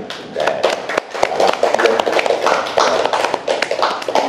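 A small group of people clapping by hand, with irregular, uneven claps, mixed with voices.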